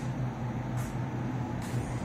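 Steady low hum and hiss of garage background noise, like a fan or air-handling unit running, with two faint brief rustles.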